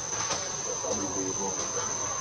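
Insects in the trees keeping up a steady high-pitched drone on a single unbroken tone, with faint voices talking underneath.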